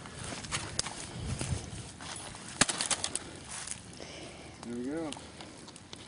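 Scattered sharp clicks and crunches of broken laptop plastic debris being moved about, the sharpest about two and a half seconds in. A short rising-then-falling vocal sound comes near the end.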